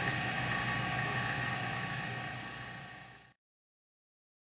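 Steady machine hum with faint high, steady whine tones from the leak-test bench equipment. It fades out about three seconds in.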